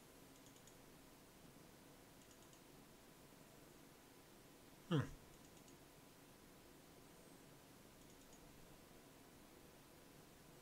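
Near silence, with a few faint computer mouse clicks. About five seconds in, one short sound sweeps quickly down in pitch from high to low; it is the loudest thing here.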